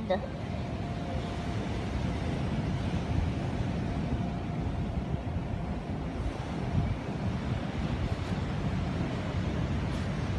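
Strong sea wind blowing across a phone's microphone, a steady low rumble, with ocean surf beneath it.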